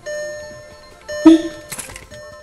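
Background music, with one loud, short clunk and whir about a second in: the car's central door locks actuating as the remote's lock button is pressed, the vehicle's confirmation that the remote has been learned.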